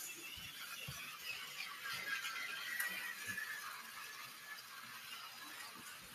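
Toy trains being handled on a track: a small mechanism whirring with a wavering pitch, and a few faint plastic knocks, quieter in the second half.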